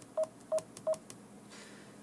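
Garmin nüvi GPS touchscreen key beeps as its back button is tapped: three short, identical mid-pitched beeps about a third of a second apart.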